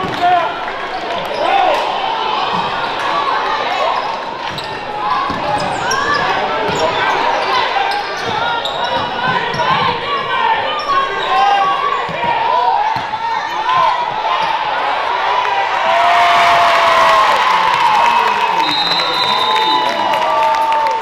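Live gym sound of a basketball game: a ball dribbling on a hardwood court, sneakers squeaking, and players and spectators calling out, with echo from the hall. The crowd noise gets louder about sixteen seconds in, after a shot at the basket.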